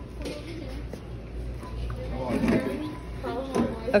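Indistinct voices talking, louder in the second half, over a low steady hum of store background noise.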